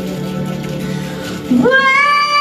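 A female singer belts a high note over a quiet live band: about one and a half seconds in, her voice slides sharply upward and settles into a loud held note.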